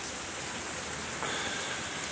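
Heavy rain pouring down steadily, an even hiss of downpour.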